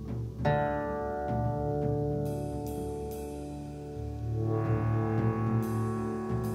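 Instrumental passage of an indie rock song, with no vocals. An electric guitar chord is struck about half a second in and left ringing over a bass line. A fuller, brighter chord comes in about four and a half seconds in, with light ticking percussion.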